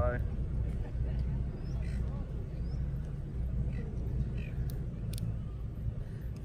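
Butter knife being worked around the inside of a coconut shell to loosen the flesh, heard only as a couple of faint clicks near the end, over a steady low outdoor rumble.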